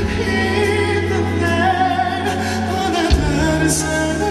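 Live ballad performance: a solo singer sings held notes with vibrato over keyboard and band accompaniment, and the bass moves to a new note about three seconds in.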